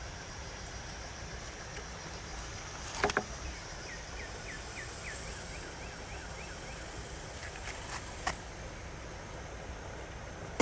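Steady outdoor background noise by a creek, with a sharp double click about three seconds in and another near the end. From about four to seven seconds a fast run of short, high chirps repeats about four times a second.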